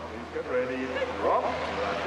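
Skeleton sled runners sliding on an ice track: a steady low rumble as the sled runs down the course, with a voice talking over it.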